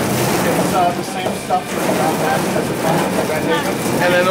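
Incline grape conveyor, driven by an electric gear motor, running steadily as it carries grapes from the hopper up into a bladder press.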